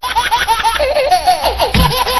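High-pitched laughter in quick, evenly repeated 'ha-ha' steps, set to music; a heavy bass beat comes in near the end.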